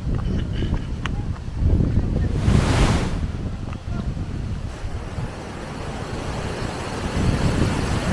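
Wind buffeting the microphone in gusts, with one strong gust about two and a half seconds in, over the steady rush of a waterfall that grows louder near the end.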